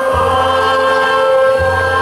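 Polish folk dance music with a choir singing held notes over a bass line that changes note about one and a half seconds in.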